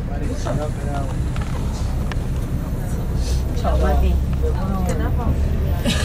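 Steady low rumble of a moving vehicle heard from inside it: engine and road noise, swelling a little past the middle. Faint voices of other people talking come through now and then.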